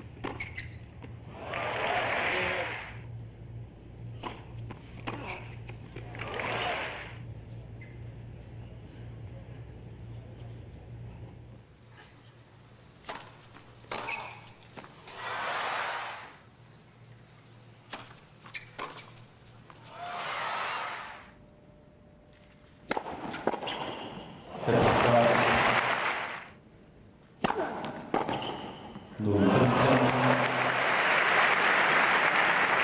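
Tennis ball struck by rackets and bouncing, heard as sharp knocks, with several short bursts of crowd cheering and applause after points, the loudest about five seconds from the end.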